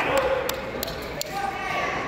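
Spectators' voices in a large gymnasium, with a quick run of sharp knocks, about three a second, that stops about a second in.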